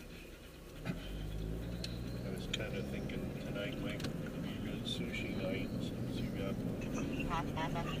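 Car engine and road noise heard from inside a Honda compact SUV's cabin as it pulls away from a stop and speeds up. A knock comes just under a second in, then a low engine hum that grows steadily louder.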